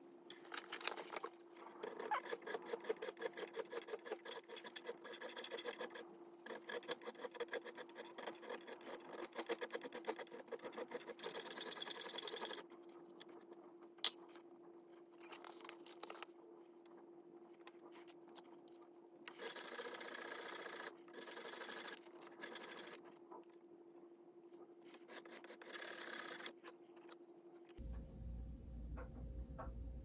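Rapid back-and-forth rasping strokes of sandpaper, wrapped round a wooden drumstick, shaping a silver piece clamped in a bench vise; the strokes run steadily for the first dozen seconds, then come in shorter spells. A steady low hum runs underneath, and a single sharp click sounds about halfway.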